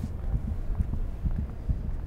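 Low, rapid, uneven thuds like a racing heartbeat over a low rumble: a tension sound effect in the film's soundtrack.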